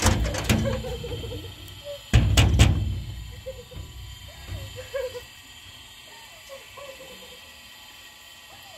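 Several heavy knocks and rattles on a sheet-metal door: a few in the first half second, then a louder cluster of bangs about two seconds in. After that it goes quieter, with only faint short pitched sounds.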